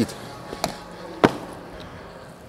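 Two sharp knocks of gym equipment, about half a second apart, the second louder.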